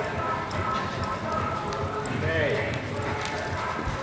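Hoofbeats of a palomino reining horse loping on soft arena sand, with people's voices talking in the background.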